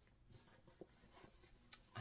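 Near silence with a few faint, soft rustles and small clicks: hands taking the little plastic clips off a new pair of panties.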